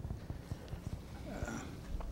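Quiet room noise in a lecture hall, with a few faint, irregular low knocks and rustles.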